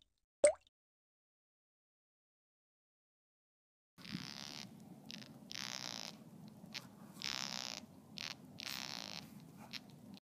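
ASMR sound effect for pulling a maggot out of a skin wound: an uneven run of squishing bursts starting about four seconds in, after a single short blip half a second in.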